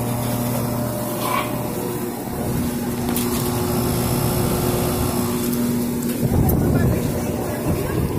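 1994 Rheem Classic 2-ton outdoor air-conditioner unit running: a steady electrical hum from the compressor under the rush of the condenser fan's air, with a louder rush about six seconds in.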